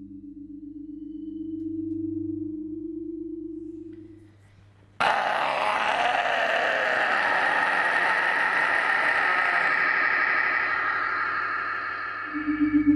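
A low droning tone fades out over the first four seconds. About five seconds in, a harsh black-metal vocal scream starts suddenly, shouted into a hand-cupped microphone, and is held at an even level for about seven seconds.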